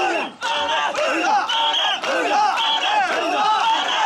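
A crowd of mikoshi bearers shouting a chant together as they carry the portable shrine, many voices overlapping without a break.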